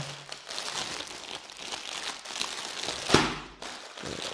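Clear plastic packaging around a folded dress piece crinkling and crackling as hands press and work it open, with one sharp, louder crackle about three seconds in.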